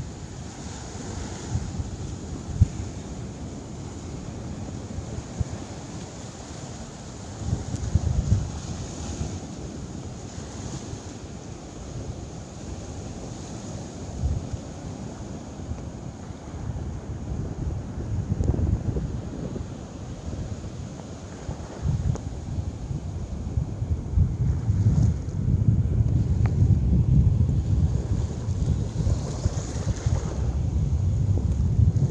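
Ocean surf washing on a beach, with wind buffeting the microphone in low gusty rumbles that grow stronger over the last several seconds.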